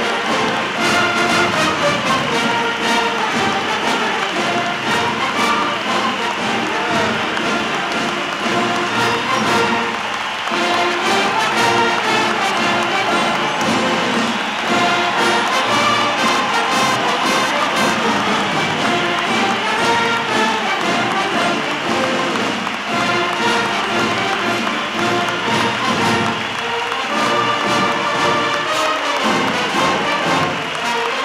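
Brass-led band music playing steadily, with a crowd applauding and cheering underneath.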